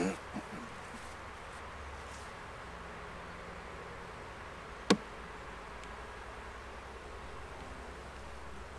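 Steady buzzing hum of a mass of Saskatraz honeybees flying around an opened hive while their frames are handled. A single sharp knock about five seconds in stands out above the hum.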